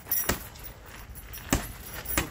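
Boxing gloves landing punches in sparring: two sharp slaps, one just after the start and a louder one about a second and a half in.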